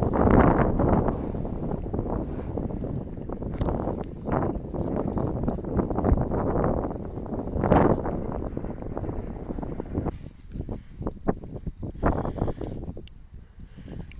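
Wind buffeting the microphone along with footsteps crunching through dry cereal stubble. In the last few seconds the wind eases and separate crunching steps stand out.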